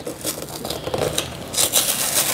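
Pop-Tarts packaging rustling and crinkling as it is handled and opened, an irregular crackle that grows brighter near the end.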